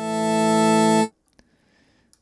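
A synth pad chord from the Vital wavetable synth, layering the Squish Flange and Granular Upgrade wavetables. It swells in gradually over about a second on a slow attack, holds steady, then cuts off abruptly just after a second, leaving near silence.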